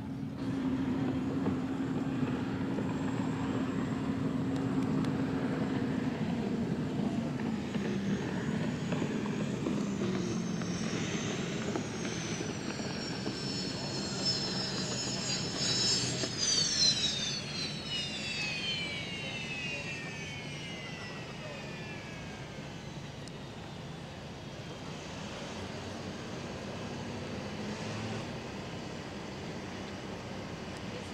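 Unlimited hydroplane's turbine engine at racing speed: a high whine that grows and climbs as the boat approaches, is loudest as it passes close about halfway through, then drops steeply in pitch and fades as it runs away.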